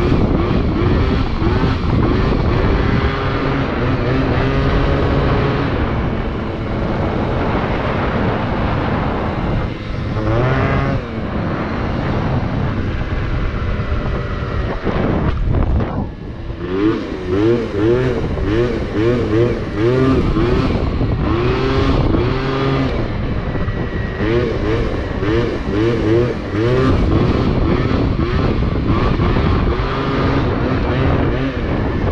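Pre-bug Yamaha Zuma scooter's small two-stroke engine, fitted with a Malossi 70 cc kit and Malossi expansion pipe, under way with the throttle worked on and off. Its pitch sweeps up over and over, more often in the second half, with a brief drop in level near the middle.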